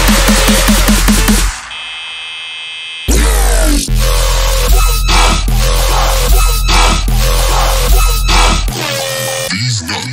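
Loud dubstep-style electronic music. About a second and a half in it breaks down to a quieter stretch of sustained tones, then about three seconds in heavy deep bass and hard drum hits crash back in.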